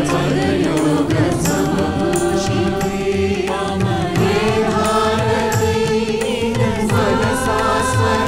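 A mixed group of men and women singing a chant-like song together into microphones, with instrumental accompaniment and a steady low beat.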